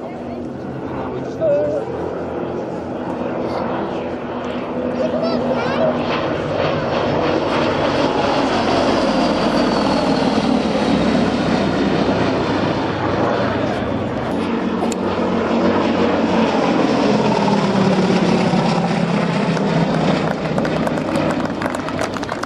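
A Gloster Gladiator biplane's Bristol Mercury nine-cylinder radial engine running in flight. It grows loud as the aircraft passes close about halfway in, fades a little, then swells again near the end, its pitch bending as it goes by.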